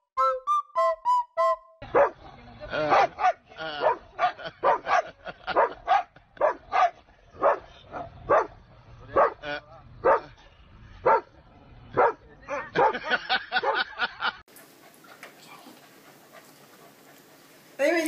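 A dog barking over and over, about two barks a second, for roughly twelve seconds. Short high pitched notes come before it, and faint hiss follows it.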